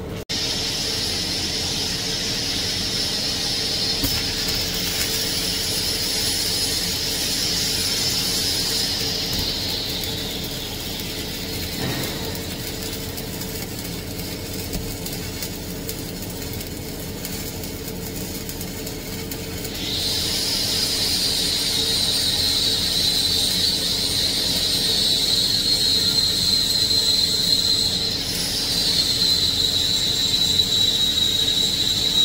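Stick welding arc running the cap pass on a 2-inch pipe weld-test coupon: a steady crackling hiss with a high-pitched whine that slowly slides down in pitch, fades out about ten seconds in and returns about twenty seconds in.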